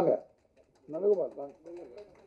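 Speech only: a man's voice in two or three short, quieter phrases with pauses between.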